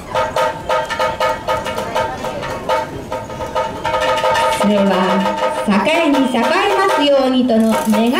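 Kagura music: steady held tones with a quick run of sharp drum strokes. From about halfway, a man's voice takes over, chanting in long sliding notes.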